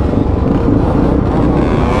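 Motorcycle and quad engines running loudly at close range: a dense, steady rumble, with a faint engine note rising in pitch about halfway through.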